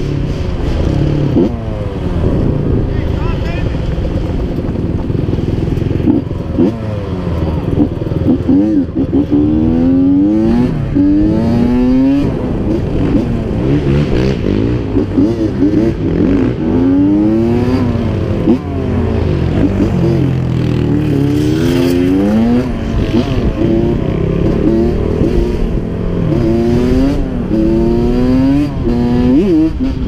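Honda CR85 two-stroke dirt bike engine running hard under acceleration, its pitch rising again and again as it revs up and changes gear.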